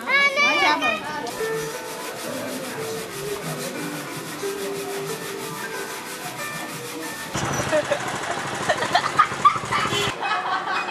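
A young child's high, wavering voice call lasting about a second, then a steady murmur of people talking in the street. Near seven seconds the sound changes suddenly to louder, busier noise with scattered clicks and knocks.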